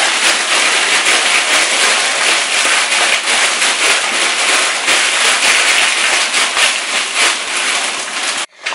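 Plastic bag of frozen cut green beans being shaken out into a pot of simmering vegetables: steady crinkling of the bag with many small clicks from the beans dropping in.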